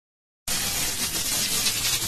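A burst of hissing, static-like noise starting about half a second in, used as an intro sound effect of an electronic trap beat.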